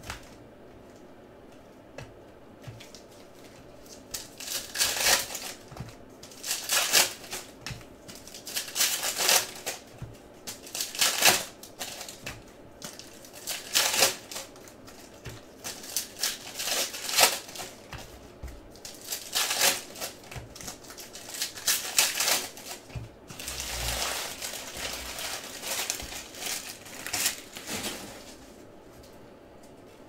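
Foil wrappers of Panini Select basketball card packs being torn open and crinkled by hand: irregular crackling rustles, one after another, from about four seconds in until shortly before the end.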